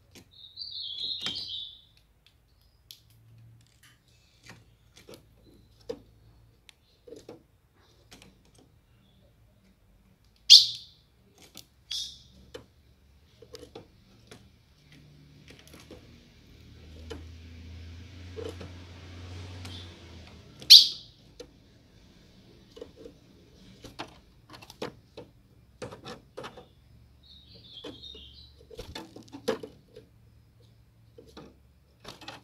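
Female ultramarine grosbeak (azulão) calling in a cage: a short chattering burst near the start and again near the end, and a few loud, sharp single chips in between, among many light ticks and taps.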